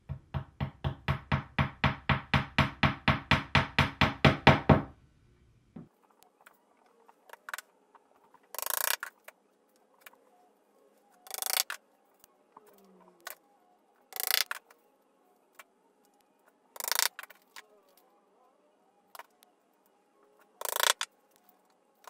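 A small hammer tapping track nails down through HO-scale model railway track into a wooden platform: a fast, even run of taps, about four or five a second, growing louder for about five seconds, then single knocks every few seconds.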